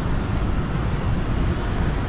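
City street traffic, with scooters and cars passing: a steady low rumble of engines and tyres.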